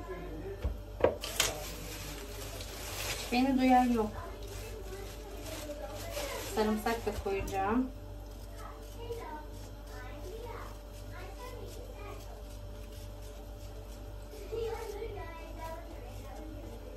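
Indistinct voices in the background, too unclear to make out, with a sharp click a little after a second in and a faint steady hum underneath.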